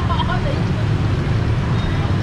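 Steady low rumble of street traffic, with a brief voice in the first half-second.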